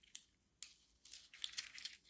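Faint rustling and crinkling of cardstock pages and paper tags being handled and flipped in a handmade paper mini journal: a few short scrapes early, then a quick cluster of them in the second half.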